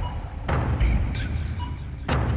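Soundtrack of a video countdown timer: a deep, steady rumbling drone with a heavy thump and short beeps as each number comes up, about one every second and a half.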